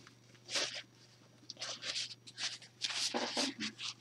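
Satin drawstring pouch rustling as it is handled: a series of soft swishes, sparse at first and closer together in the second half.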